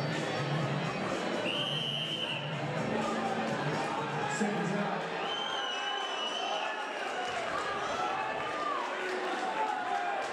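Boxing-hall crowd shouting and cheering between rounds, with music playing under it for about the first five seconds.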